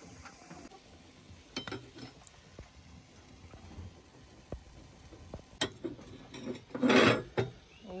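Scattered sharp metallic clinks of cast-iron stove-top rings and a metal poker hook, then a louder clatter near the end as two logs are dropped into a wood stove's firebox.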